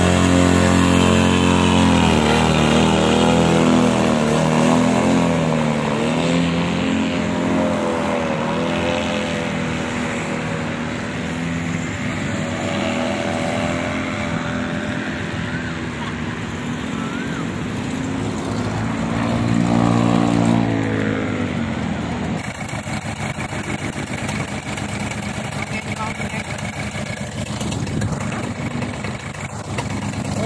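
Paramotor trike engine and propeller running at full power on takeoff. Its drone wavers in pitch and fades as it climbs away, then swells again about two-thirds through as it comes back past. After an abrupt change near the two-thirds mark, a lower, rougher steady noise with a faint hum takes over.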